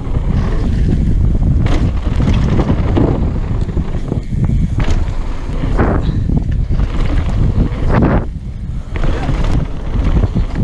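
Wind buffeting the microphone of a helmet-mounted camera on a fast mountain bike descent, over a steady rumble of tyres on the trail. Several sharper knocks and rattles from the bike hitting bumps stand out, about two, three, five, six and eight seconds in.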